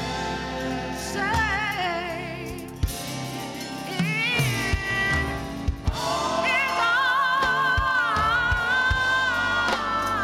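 Gospel praise team singing with microphones over band accompaniment, with wavering held notes, the longest in the second half.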